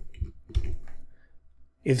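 A few computer mouse clicks with soft low thumps, then a man starts speaking near the end.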